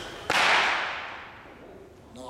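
Loaded barbell with bumper plates caught at the shoulders in a clean. A sudden sharp crack comes about a third of a second in, then a hissing rush that fades away over about a second.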